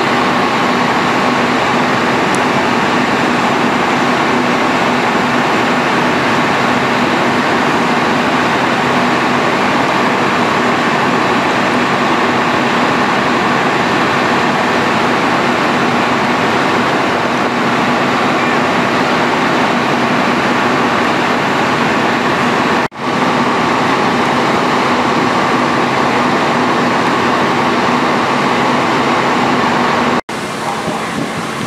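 Fire apparatus diesel engine running hard to drive its pump or aerial ladder: a steady, loud drone with a constant hum and a higher whine, cutting out briefly about three-quarters of the way through.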